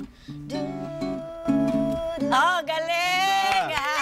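Acoustic guitar strumming chords. Over it, a voice holds one sung note, then slides into a wavering, bending scat line.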